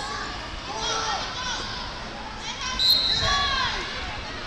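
Coaches and spectators shouting from the mat side, echoing in a large hall, as wrestlers scramble. A brief high squeak comes about three seconds in, along with a dull thump.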